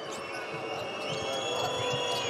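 Arena crowd noise during a live basketball game, with a ball being dribbled on the court and high-pitched sneaker squeaks on the hardwood starting about a second in.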